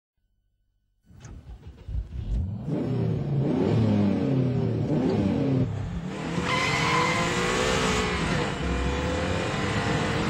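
A Subaru Impreza's engine revving and accelerating hard, its pitch climbing and falling back through gear changes. A few clicks come first, and from about six seconds in a rising engine note is joined by loud road and tyre noise.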